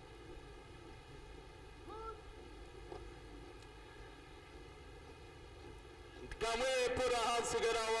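Faint steady open-air background with a short rising call about two seconds in, then a man's voice speaking commentary over a PA from about six seconds in.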